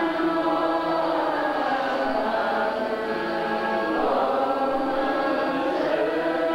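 A large assembly of Vietnamese Buddhist monks and nuns chanting together in unison, in long held notes that shift pitch every couple of seconds.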